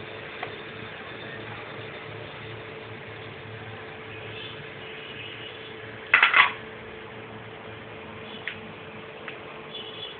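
A short clatter of dishware against a glass bowl about six seconds in, with a few lighter clicks later, as lumps of jaggery are pushed off a plate into the bowl. A low steady hum runs underneath.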